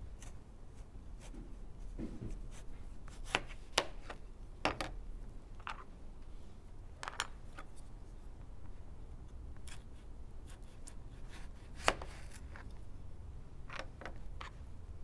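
A kitchen knife slicing through a raw potato on a plastic cutting board, with irregular sharp knocks as the blade meets the board; the loudest knock comes near the end.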